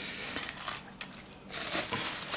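Plastic cling wrap crinkling as it is handled over rolls on a plate, starting about one and a half seconds in after a faint stretch.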